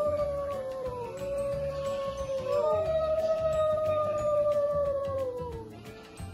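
Long drawn-out howling tones, three of them, each held for two to three seconds and falling away at its end, over background music with a low drum beat.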